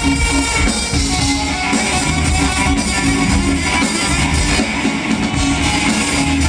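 Live funk band playing, with an electric guitar to the fore over a repeating bass line and drum kit keeping a steady beat.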